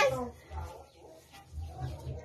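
A voice trailing off at the start, then faint, low murmuring sounds of voices.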